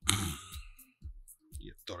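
A man's loud sigh into a close microphone at the start, over background music with a steady beat of about two pulses a second; he starts speaking near the end.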